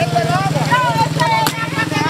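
Motorcycle engine idling steadily with a fast, even pulse, under several people talking at once. There is a single sharp knock about one and a half seconds in.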